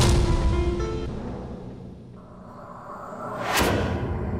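Dramatic TV-drama background score: a sudden hit at the start that dies away over about two seconds, then a swelling whoosh effect near the end.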